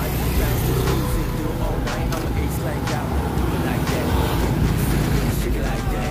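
Busy street ambience: steady motor-scooter and car traffic noise with people's voices in the background.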